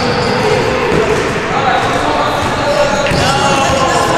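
A basketball being dribbled on a hardwood gym floor, with repeated bounces in a large hall.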